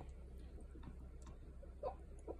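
Faint, irregular wet mouth clicks and smacks from a baby sucking cream off his fingers, over a steady low hum, with one louder smack or short sound near the end.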